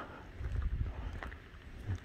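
Wind buffeting the phone's microphone: low rumbling gusts, strongest from about half a second to a second in, with a short gust near the end.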